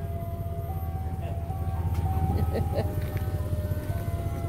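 Ice cream truck chime music playing a simple tune of single electronic notes, over the steady low rumble of the truck's idling engine.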